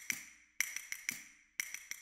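Light taps, each with a short high ping, coming about twice a second with brief silences between.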